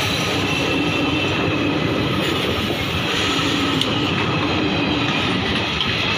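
Passenger train coaches running past close by: a steady noise of steel wheels on the rails.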